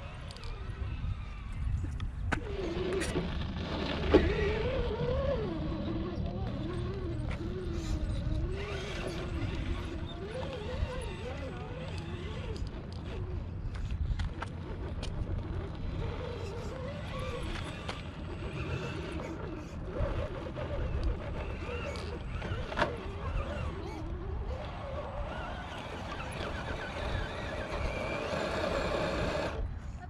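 1/10-scale RC rock crawler's brushed electric motor and geartrain whining, the pitch rising and falling with the throttle as it crawls up rock. A low rumble of wind on the microphone runs underneath, with a sharp knock about four seconds in.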